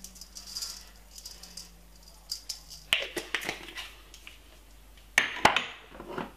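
Peri-peri seasoning shaken from a shaker jar onto raw chicken pieces: a faint sprinkling hiss, then a few rattling shakes and clicks, with a louder clatter about five seconds in.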